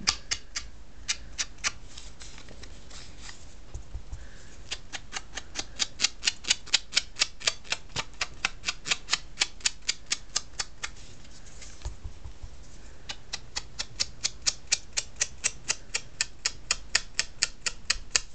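A small craft sponge dabbed quickly against the edges of a piece of stamped cardstock to ink them, making quick light taps about four a second. The taps come in three runs with two short pauses.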